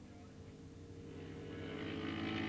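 Engines of several 450-class racing motorcycles running at speed, growing steadily louder from about a second in as the pack approaches.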